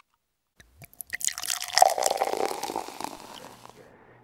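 Transition sound effect for the title card: a couple of sharp clicks, then a rushing noise that swells to a peak about two seconds in and fades away.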